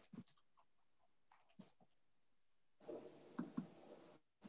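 Faint scattered clicks of a computer mouse and keyboard over a video-call microphone. About three seconds in, a hiss of room noise comes up, with two sharper clicks.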